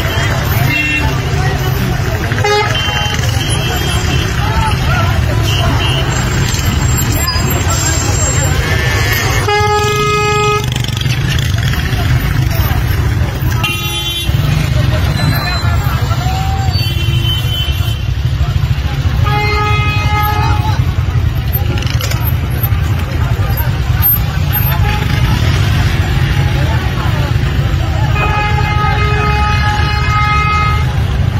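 A vehicle horn sounding three times, each a steady blast of a second or two about ten seconds apart. Under it runs a steady low rumble of traffic, with scattered voices.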